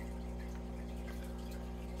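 Aquarium aeration: a steady low hum with faint bubbling water from the air-driven sponge filters and bubble curtain.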